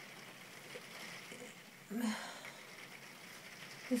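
Quiet pause with a faint steady hiss, broken about two seconds in by a brief, soft vocal sound from the speaker, such as a hesitant hum or breath.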